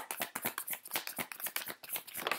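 A deck of oracle cards being shuffled by hand: a rapid, uneven run of small card clicks and flicks.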